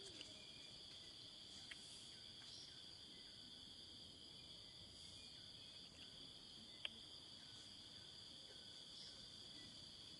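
Faint, steady high-pitched insect chorus, a continuous even drone that does not rise or fall. A single sharp click stands out about seven seconds in.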